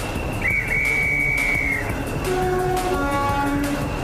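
A train running on the rails with a low rumble and repeated clatter, with a high held tone for about a second and a half near the start. Background music notes come in about halfway.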